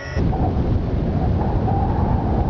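Loud, low rumbling noise that starts abruptly a moment in and holds steady.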